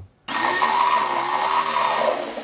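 Corded electric power drill running, starting suddenly a quarter second in and holding a steady speed and pitch.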